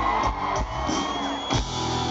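Live pop-rock band playing an instrumental stretch between sung lines, drum hits over bass and guitar.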